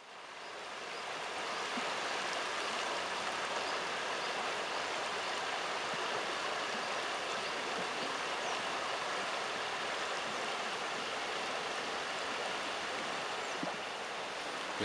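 River water rushing steadily, fading in over the first couple of seconds.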